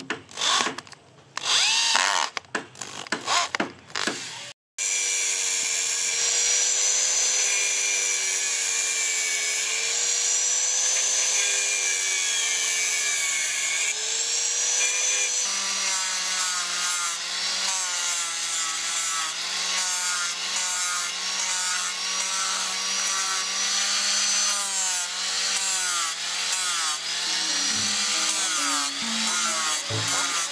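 A cordless drill drives screws into a wooden axe handle in short bursts. About five seconds in, after a sudden break, an angle grinder with a sanding disc runs steadily against the wooden handle, its pitch wavering as it is pressed into the wood.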